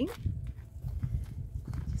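Low, irregular thumps and rumble of a handheld camera on a tripod selfie stick being carried while the person walks: handling noise and footsteps.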